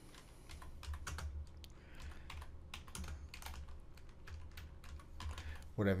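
Typing on a computer keyboard: an irregular run of quiet key clicks over a faint low hum.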